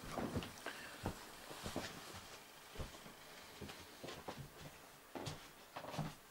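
Faint, scattered knocks and rustles of a person getting up and moving away from the microphone, about a dozen small irregular bumps.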